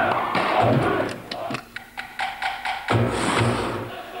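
Short percussive TV transition sting: heavy drum hits, then a quick run of sharp clicks, then heavier hits again about three seconds in, with a brief high hiss near the end.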